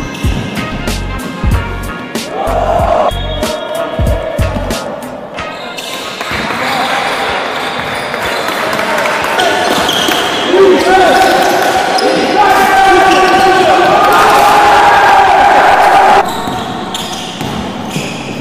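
A hip-hop beat with a heavy kick drum for about the first five seconds, then the live sound of an indoor basketball game: a ball bouncing on the court and players' voices. The louder stretch of game sound breaks off about sixteen seconds in.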